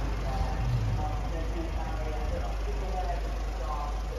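Background talk, a person's voice speaking in the distance, over a steady low rumble.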